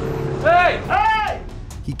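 Two high shouts from a man, each rising then falling in pitch, about half a second apart. They come over a steady low hum that stops in the first moments.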